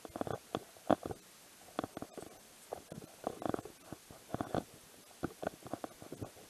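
Irregular scraping and knocking of clothing rubbing against a body-worn action camera's microphone as the wearer walks, several short bumps a second.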